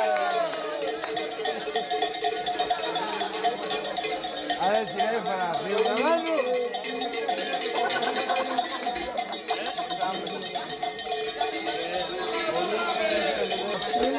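Cowbells clanking continuously, with a crowd's voices and shouts over them.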